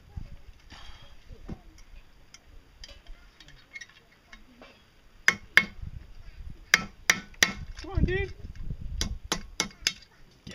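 Hammer blows ringing on the steel socket of a shovel as the rivets holding the handle are driven out. A few faint taps come early, then sharp strikes start about halfway in, with a quick run of blows near the end. A short voiced grunt-like sound falls between the two groups.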